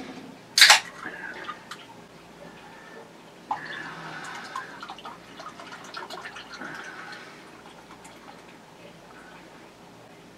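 A sharp knock as something is set down on the desk. A few seconds later comes about four seconds of a drink being poured into a glass, with small fizzy crackles that trail off.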